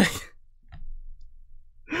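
A man's breathy exhale, a sigh as he winds down from laughing, right at the start. Then a quiet stretch with only a faint low hum, until speech begins again at the very end.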